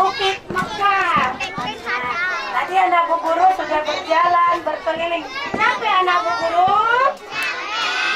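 Many young children's voices at once, high-pitched and overlapping, talking and calling out without a break.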